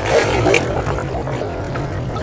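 Seawater surging and splashing into a narrow crack in a concrete shoreline, loudest in the first half-second, over a steady low rumble.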